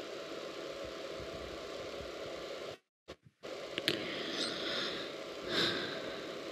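Steady hiss from the shared video's soundtrack, cut to dead silence for about half a second halfway through by a streaming dropout. Faint voice sounds come in during the second half.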